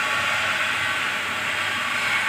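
Steady hissing background noise that holds at an even level, with no distinct events.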